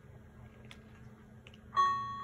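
Low room hum with a few faint ticks, then near the end a single bright synthesized note starts suddenly and rings on: the first note of a tune.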